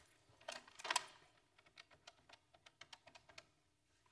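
Corded telephone handset lifted with a clatter about a second in, then a quick run of light clicks as a number is dialled.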